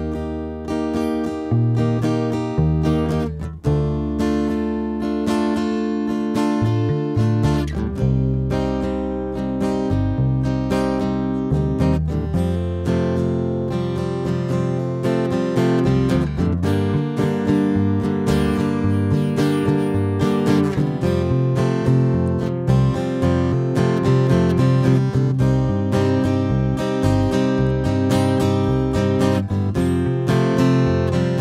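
Acoustic guitar and electric bass playing a slow instrumental introduction together, with no singing yet. The guitar plays chords while the bass holds long low notes that change every few seconds.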